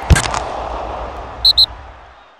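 Logo-sting sound effects: a whoosh ends in a sharp hit at the start, followed by a deep boom that slowly fades. Two short high pings come about a second and a half in.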